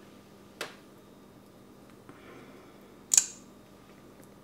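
Small clicks from opening a plastic lip gloss tube and drawing out its applicator wand: a light click about half a second in, faint handling, then a sharper, louder click a little after three seconds in.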